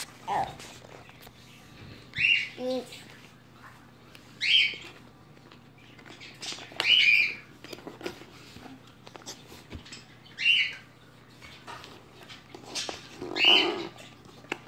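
Short, high squawking calls, about five of them, spaced two to three seconds apart, like a pet bird calling, over faint clicks and rustles.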